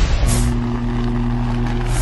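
Produced logo-intro sound effects: a whoosh, then a steady low droning chord held for about a second and a half, ending in a second whoosh.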